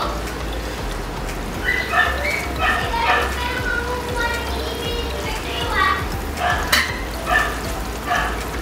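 Cooked spaghetti being tossed and stirred in cream sauce in a large aluminium pan, with a steady low hum under it. Short high-pitched vocal calls sound repeatedly in the background, and a couple of sharp clicks of the utensil against the pan come near the end.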